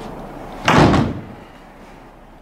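A wooden door banging shut once, a little over half a second in, with a short ring-out.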